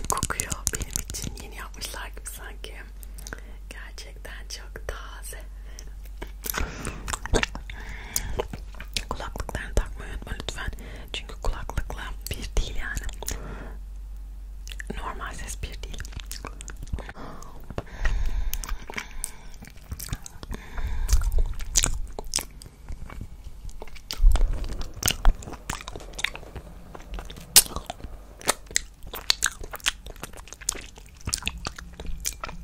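Close-miked mouth sounds of licking and sucking a hard candy cane: irregular wet smacks and sharp clicks of lips and tongue on the candy, with a brief pause near the middle.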